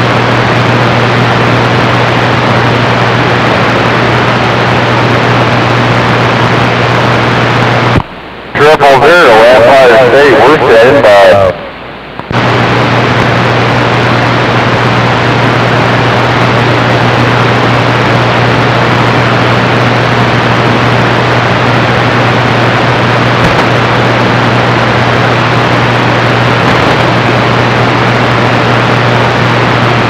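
Open band static hissing from a CB radio receiver, with a steady low hum. About eight seconds in, the static drops out as a distant station keys up, and a loud warbling transmission comes through for about three seconds. The carrier then drops and the static returns.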